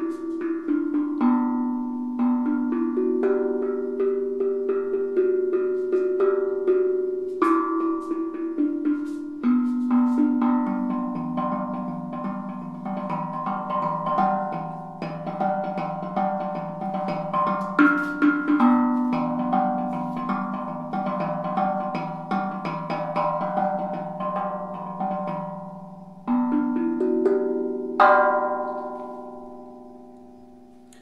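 Homemade steel tongue drum (tank drum), its E Pygmy-tuned side played with mallets: a steady run of struck, ringing notes overlapping one another. Near the end a last stroke rings out and slowly fades.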